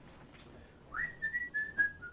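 A person whistling a single clear note that slides up about a second in, then holds with small wavers and steps in pitch.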